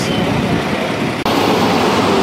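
Steady street traffic noise that turns suddenly louder and fuller a little past a second in, when a coach bus drives past close by with its engine running.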